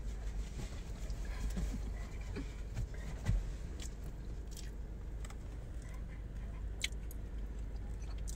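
A person chewing a bite of mini donut, with faint mouth sounds and a couple of soft clicks, over a steady low hum.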